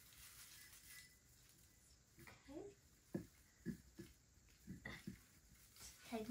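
Mostly near silence, broken by a few faint, short voice sounds from a child straining: a brief hum a little after two seconds in, then several short grunts spread over the next few seconds as she pushes the artificial tree's top section into its pole.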